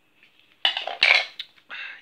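Hard plastic toys clattering and knocking as they are handled, a plastic sand scoop set down on a wooden floor: a few sharp, short clatters starting about half a second in, the loudest about a second in.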